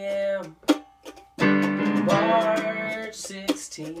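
Mandolin strumming chords over digital piano chords. There is a brief break about half a second in, with a single stroke, and then a held chord before the strumming picks up again.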